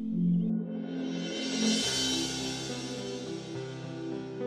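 Ambient background music: sustained held chords, with a swelling hiss that builds from about half a second in, peaking near two seconds as a new chord and a low bass line enter.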